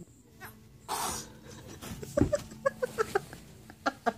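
A toddler making a string of short, whiny vocal sounds, about ten quick pips in the second half, with a soft thump just before them as she gets down onto the floor.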